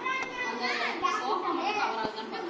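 Indistinct background chatter of several voices, children among them, with two small knocks from the phone being handled.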